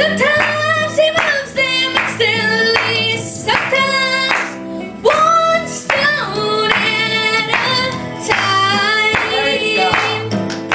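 Live gospel song: a lead voice sings long, sliding notes over instrumental backing, with hand clapping from the congregation.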